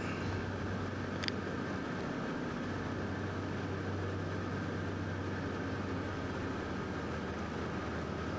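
Steady hum of a running air-conditioning unit: a continuous low drone with a faint high whine above it, and one small click about a second in.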